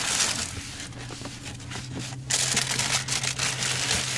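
Tissue paper crinkling and rustling as a sneaker is unwrapped from its shoebox, louder from about halfway through.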